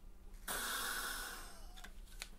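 A breath drawn in hard through a handheld inhaler: a rushing hiss about a second long that starts abruptly about half a second in and fades out.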